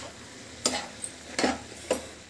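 A spoon stirring and scraping chopped tomatoes and peppers in a frying pan, about four strokes, over a faint sizzle of the vegetables sautéing.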